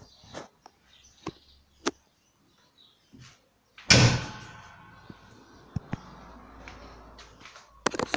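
New Holland T6010 tractor cab door slammed shut about four seconds in: one loud bang whose sound dies away slowly over the next few seconds. Light clicks and knocks come before and after it.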